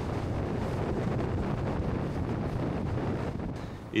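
Steady wind buffeting the microphone of a boat moving fast over choppy sea, with rushing water beneath; it drops away just before the end.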